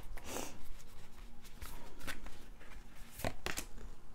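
A deck of oracle cards being shuffled and handled by hand, then laid on a table: soft papery rustles and a few light taps.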